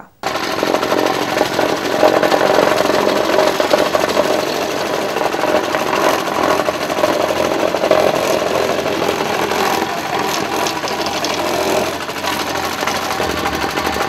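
A continuous loud mechanical rattle, steady throughout, with people's voices mixed in.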